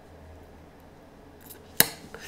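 Quiet room tone with a faint low hum, broken near the end by a single sharp click.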